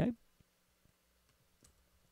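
A few faint, scattered clicks from a computer keyboard and mouse as code is edited, over a faint steady low hum.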